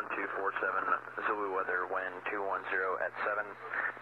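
Aviation radio voice traffic played through a PMA450A audio panel: continuous, narrow-band radio speech over a steady low hum.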